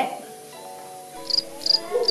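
Soft lo-fi background music with sustained notes; about halfway in, a cricket starts chirping, short high chirps roughly every half second.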